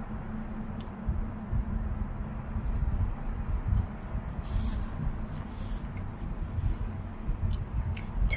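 Hands handling crocheted yarn pieces and a yarn needle: soft rubbing and rustling over a steady low rumble, with a couple of brief swishes about halfway through.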